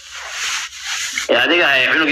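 About a second of rustling, rubbing noise with no pitch to it, then a man's voice starts speaking about a second and a half in.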